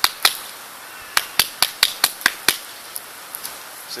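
Sharp clicks: one just after the start, then a quick run of seven at about four a second, ending about two and a half seconds in.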